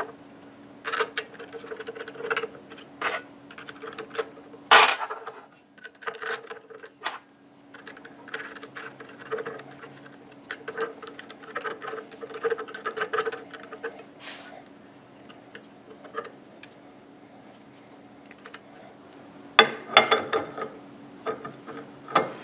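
Small metallic clicks and taps of a 4 mm Allen wrench working M5 socket-head bolts that fasten a metal spindle mount to a CNC router's Z-axis carriage, with one sharper click about five seconds in and a cluster of louder clicks near the end. A faint steady hum runs underneath.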